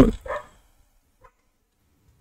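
The end of a man's drawn-out spoken word fading out in the first half second, then near silence with one faint click.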